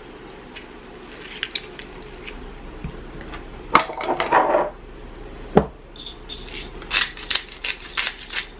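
Kitchen handling sounds of containers and utensils clinking and knocking, with two sharp knocks about four and five and a half seconds in. In the last two seconds comes a quick run of sharp ticks as salt is dispensed over the chicken.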